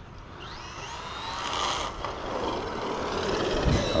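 Traxxas Maxx RC truck's electric motor whining, rising in pitch as it accelerates and getting louder as it drives on the street.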